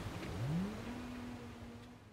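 A motor or engine rising in pitch over about half a second, then holding a steady tone and growing fainter near the end.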